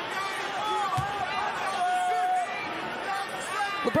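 Arena crowd murmur with several voices calling out from the bench, counting off the seconds of a free-throw routine, and one held call near the middle. A single thump about a second in.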